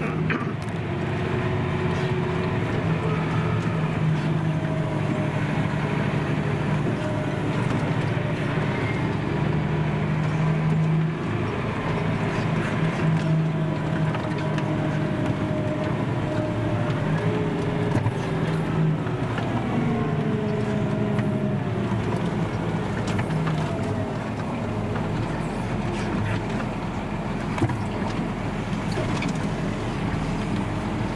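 Massey Ferguson tractor running under way, heard from inside the cab: a steady engine note with transmission and cab noise. The engine note falls and then rises again about twenty seconds in.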